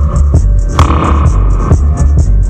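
Roots reggae dub instrumental: a deep, heavy bass line under an even hi-hat pattern, with a held mid-pitched note coming in a little under a second in and dropping out near the end.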